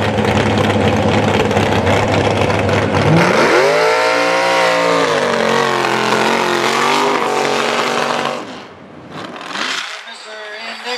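Mud truck engine running loud as the pickup drives through the mud pit. Its revs climb about three seconds in, then rise and fall as it works through the mud, and the sound drops off sharply near the end.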